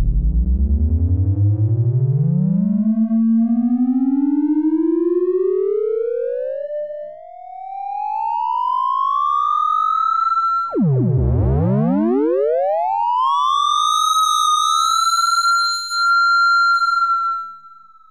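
A browser-based electronic instrument playing one buzzy tone that glides slowly and steadily up from a deep growl to a high whine over about ten seconds, drops suddenly back to the bottom, and sweeps quickly up again to hold high with a slight wobble, like a car accelerating and shifting gear. The pitch begins to fall near the end.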